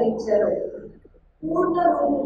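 A woman speaking in Telugu, in a steady talk with a short pause about a second in.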